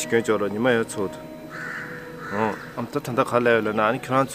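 A crow cawing outdoors, with one harsh call about a second and a half in, over a man talking.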